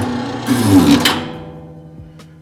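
Electric stack paper cutter running a cut: the motor drives the guillotine blade down through a stack of postcards, a loud rush with a hum that drops in pitch, strongest about a second in and then fading.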